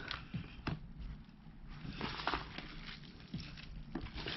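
Hands digging through very wet worm-bin bedding and castings: faint, irregular squelching and rustling with a few soft clicks.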